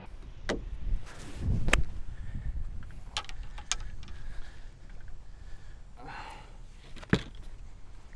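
Golf iron shot off fairway grass: a sharp click as the clubface strikes the ball, with a low rumble around it. A few fainter ticks follow.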